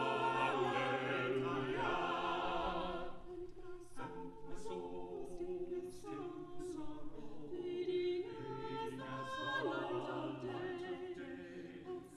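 Mixed men's and women's a cappella vocal group singing in close harmony, with no instruments. Loud held chords for about the first three seconds, then a softer passage of shorter sung syllables with crisp 's' consonants.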